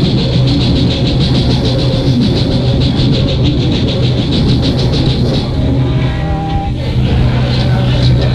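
Rock band playing live, loud and fast: distorted guitars and bass over drums keeping a fast, even beat on the cymbals, with a brief held higher note about six seconds in.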